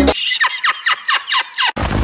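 Editing transition sound effect: a quick run of falling electronic chirps, about six a second, ending in a short burst of TV-static hiss.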